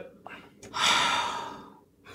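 A person's long breathy sigh, about a second long, fading out.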